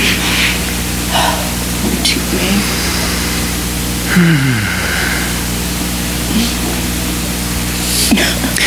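A steady low hum from the church's amplified sound system, with room noise over it. There are scattered faint murmurs and one short falling voice sound about four seconds in.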